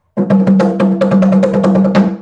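Conga drum played with a fast roll of hand strokes, about ten a second, each stroke ringing at the same steady pitch.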